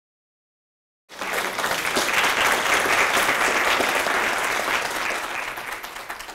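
Audience applauding. It starts suddenly about a second in and tapers off near the end.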